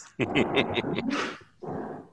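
A person laughing in a short burst of about a second, followed by a quieter sound near the end.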